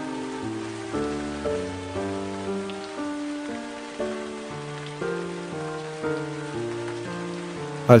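Slow background music of held notes that change about twice a second, over a steady hiss of rain.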